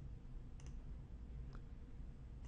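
Two faint computer mouse clicks about a second apart, over a low steady hum.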